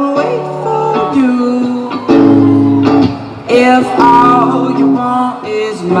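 Live electric guitar strumming held chords with a man singing over it; the guitar is out of tune.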